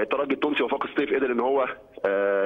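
A man speaking Egyptian Arabic over a telephone line, his voice thin and narrow, with a short pause near the end.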